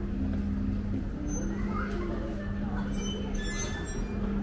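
Ambient sound of a covered shopping street: passers-by talking over a steady low hum, with music in the background and a few light high clinks near the end.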